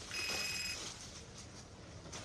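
A short electronic chime with a ringtone-like sound, heard once for about half a second just after the start.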